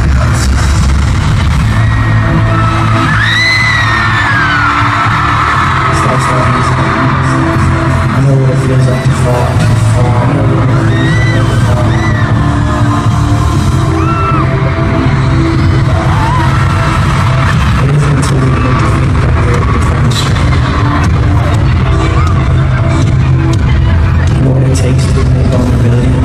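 Loud amplified concert music over an arena sound system, with deep bass and long held notes. High screams from the crowd rise and fall over it several times, the biggest a few seconds in.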